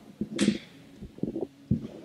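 A table microphone on its stand being handled and shifted, giving a brief rustle about half a second in and then a few soft low knocks and bumps.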